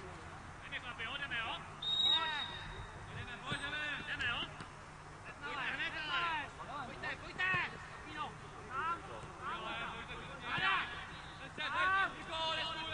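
Players shouting short calls to one another across a football pitch, several voices one after another.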